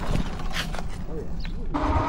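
Low, steady rumble of riding noise from an electric hub-motor motorcycle on concrete: tyre noise and wind on the microphone, with a few short knocks. The sound changes near the end.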